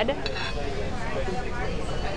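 Dining-room background: a steady low hum with faint voices in the background.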